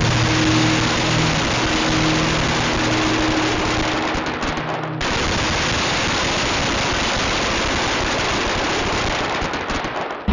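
Dense, rapid crackling of a Pyro Viagra crackling firecracker going off, a continuous rattle of tiny pops like a fusillade. It cuts off and starts again about halfway through, with background music under the first half.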